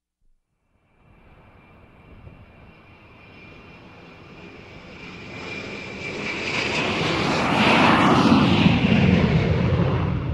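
Sound-effect intro to an electronic music track. After about a second of silence, a rushing noise with a steady high whine rises slowly, swells to its loudest about eight seconds in, then eases slightly.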